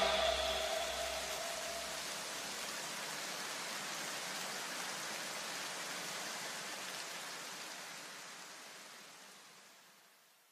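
A steady wash of white noise from an electronic backing track, with a low bass tail dying away in the first couple of seconds. The noise fades gradually to silence near the end.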